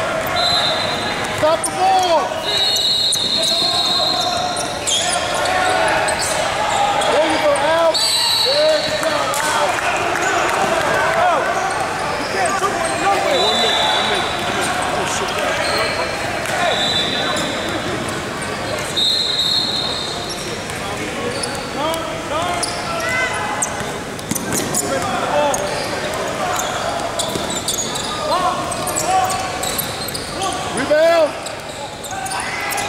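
Basketball game on a hardwood gym floor: balls bouncing, sneakers squeaking, and indistinct shouts from players and onlookers, echoing in the large hall.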